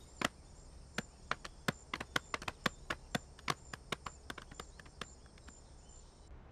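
Footsteps of several people walking off on hard ground: sharp, irregular steps about three or four a second, growing fainter toward the end, over a steady high hiss.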